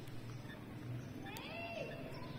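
A faint animal call: one short call that rises and then falls in pitch, a little past halfway through.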